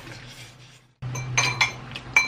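Metal cutlery clinking against a plate: a few sharp clinks with a short ring in the second half, after a brief drop to silence about a second in.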